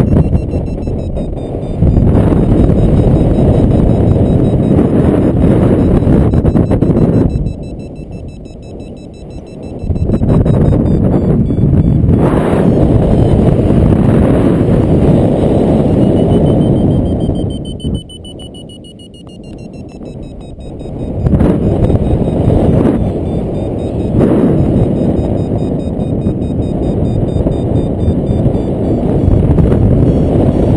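Airflow buffeting a helmet or harness camera's microphone in flight, a loud gusting rush that eases off twice. Faint high beeps run underneath and rise in pitch about two-thirds of the way through.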